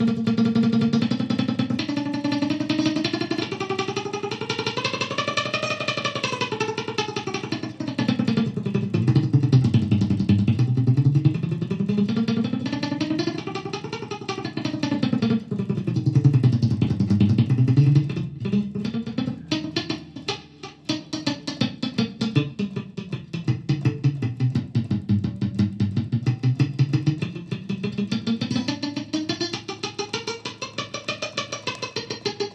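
Stratocaster-style electric guitar playing fast picked single-note runs of a tenor passage, climbing and falling through the notes of the chord in repeated waves.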